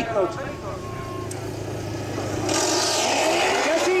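Two motorcycle engines running at the start line, then revving hard as the bikes launch up a dirt hill-climb slope about two and a half seconds in, with a loud rush of engine noise and roosting dirt.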